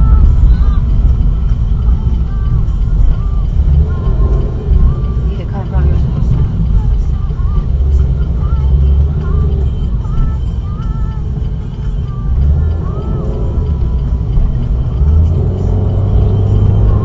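Steady low engine and road rumble inside a moving car's cabin, picked up by a dashcam.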